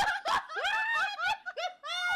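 Two people laughing hard together in high-pitched giggles and snickers, right after a shouted 'oh my god'.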